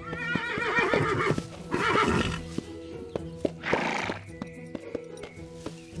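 A horse whinnies twice in the first two and a half seconds, then gives a short breathy burst about four seconds in, with hooves striking the ground, over a sustained background music bed.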